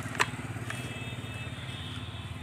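An engine running steadily with a fast, even pulse, with one sharp click about a quarter of a second in.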